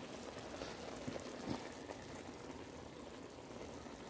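Pot of macaroni boiling in water, a faint steady bubbling hiss, with a couple of soft ticks between one and one and a half seconds in.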